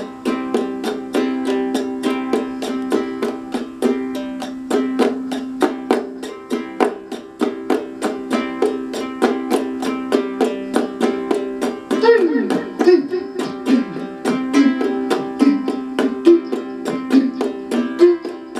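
Concert ukulele strummed in a steady rhythm of ringing chords, about four strums a second.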